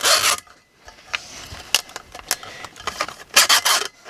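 Utility knife blade cutting around the edge of a 10-inch woofer's cone, heard as a series of short rasping strokes, the loudest near the end.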